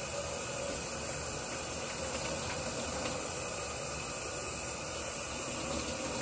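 Kitchen faucet running water steadily into the sink, an even hiss.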